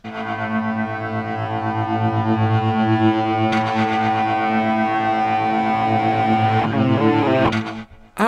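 A short instrumental music interlude: one chord held for most of it, then a quick run of changing notes near the end before it stops.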